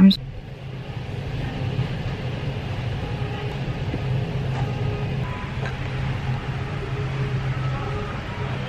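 Steady low rumbling hum of a busy shop floor, with faint voices in the background.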